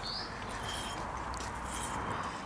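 Outdoor background noise with a steady hiss and a few faint, brief bird chirps, one a short rising chirp right at the start.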